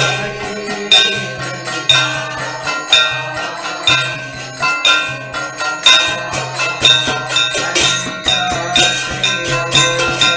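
Kirtan accompaniment: a mridanga drum played with the hands, under ringing metal hand cymbals that clash about once a second in a steady rhythm.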